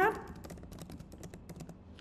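Typing on a computer keyboard: a quick, uneven run of light key clicks as a phrase is typed.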